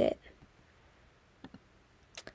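A woman's voice finishing a word, then near silence with two faint, short clicks about one and a half seconds in.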